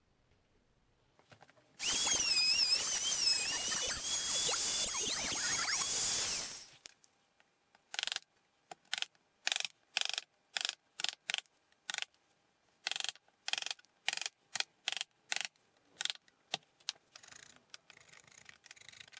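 A small electric trim router runs for about five seconds, its high whine wavering as it cuts. Then a mallet drives a wood chisel with about twenty quick blows, two to three a second, ending in faint scraping as the chisel pares the wood.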